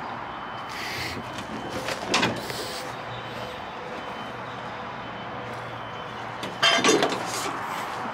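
Steady background noise, then about seven seconds in a sudden, louder metallic clatter as the door of an old 1978 Plymouth Trail Duster truck is opened.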